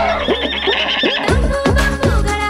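Cartoon horse whinny sound effect, a wavering call that falls in pitch, laid over the rhyme's backing music; the beat comes back in a little over a second in.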